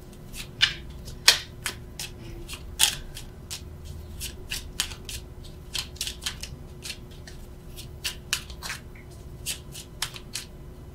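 A deck of tarot cards being shuffled by hand: a quick, irregular run of soft clicks and snaps as the cards slip against each other. A few louder snaps come about a second in and again near three seconds.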